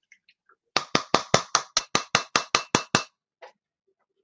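A quick, even run of about a dozen sharp knocks, about five a second, lasting a little over two seconds.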